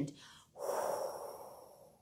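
A woman's breathy blowing, a whoosh made with the mouth to imitate the wind. It starts suddenly about half a second in and fades away.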